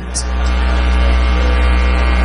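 Steady electrical mains hum with a buzzy edge, heard alone in a gap between sentences of a speech.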